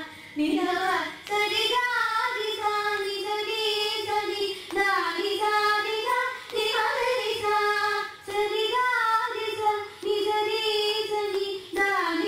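Two women's voices singing a Carnatic ragamalika together in long melodic phrases, with brief pauses for breath every second or two.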